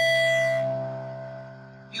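Electronic keyboard playing a piano sound: an E in the right hand and a C in the left hand struck together once as a single chord. The chord is held and fades slowly over about two seconds.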